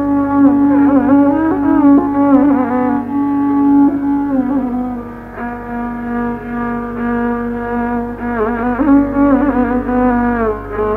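Carnatic violin playing a slow melody in raga Harikambhoji, long held low notes broken by sliding, oscillating ornaments (gamakas), on an old recording with a steady low hum.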